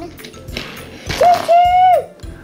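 A young girl's voice imitating a train: a breathy rush, then a loud, high, steady 'whoo' held in two parts near the end.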